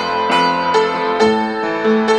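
Upright piano played with both hands: chords and melody notes struck about every half second, the earlier notes ringing on beneath the new ones.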